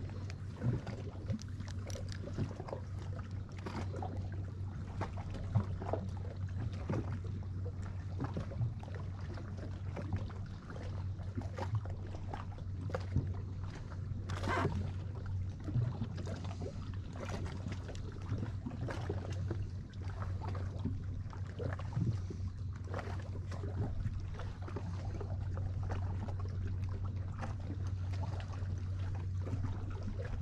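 Ambience aboard a small boat on the water: light lapping and scattered small clicks and knocks against the hull over a steady low hum. The loudest knock comes about halfway through.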